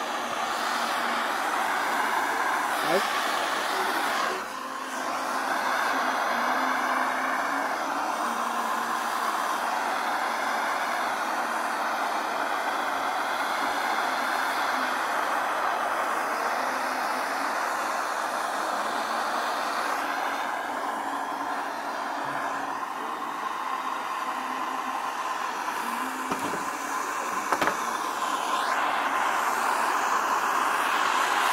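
Handheld gas torch burning with a steady hiss as its flame heats body lead on a car door bottom, keeping the lead soft for paddling.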